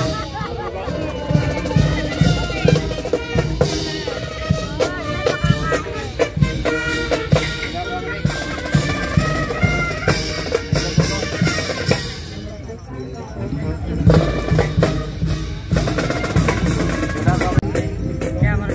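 Marching band playing brass over snare and bass drums: a brass melody with steady drum beats and rolls. About twelve seconds in the music thins out briefly, then the drums come back strongly.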